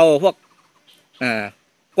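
Only speech: a man speaking Thai slowly, one drawn-out word ending at the start and one short word about a second in, with pauses between.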